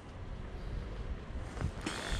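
Steady rushing wind noise on the microphone, with outdoor background noise beneath it.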